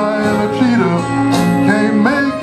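Men's choir singing a gospel song with instrumental backing, with a couple of sharp percussion hits.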